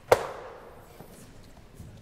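A single sharp knock just after the start, loud and sudden, with a ring that dies away within about half a second in the hall's echo.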